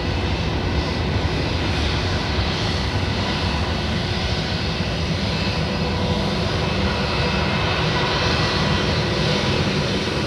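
Airbus A320-232's IAE V2500 turbofan engines at low taxi power as the airliner rolls past: a steady rumble with thin whining tones, growing slightly louder.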